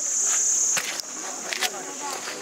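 A steady, high-pitched chorus of insects shrilling, loudest for the first second, with a few sharp clicks and knocks later on.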